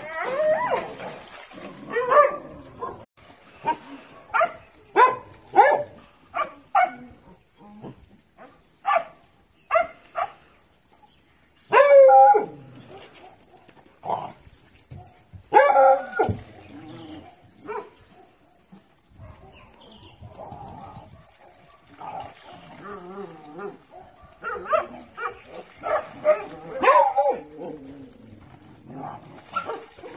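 A pack of dogs barking, short barks coming in irregular runs, with the loudest a little before and just after the middle.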